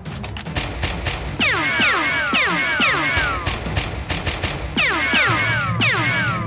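Rapid volleys of falling "pew"-style zaps, a dubbed sound effect for toy-blaster fire, over a background music track. A quick run of clicks comes first, and the zaps start about a second and a half in, in bursts of several a second with short breaks.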